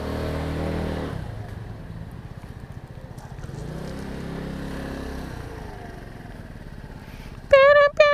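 125cc motor scooter's small engine pulling away at low speed, with a rev in the first second and another about halfway through, running low in between. A loud held tone cuts in just before the end.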